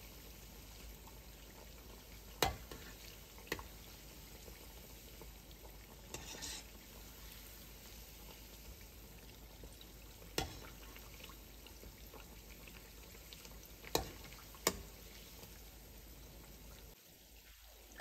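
Falafel deep-frying in hot oil, a faint steady sizzle, with a few light clicks of a metal slotted spoon against the pan.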